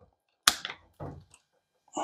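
Hand wire stripper clicking as its jaws close on and pull the insulation off electrical wire: a sharp click about half a second in and a fainter one about a second in.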